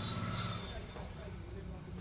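Hands rubbing and kneading an oiled bare back during a massage, over a steady low rumble and faint background voices.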